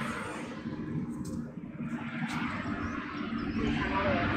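Steady low outdoor background rumble, with a few faint clicks.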